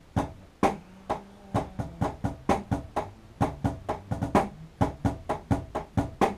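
Drum kit being played: a steady pattern of sharp strikes, about three or four a second, some with a short pitched ring under them.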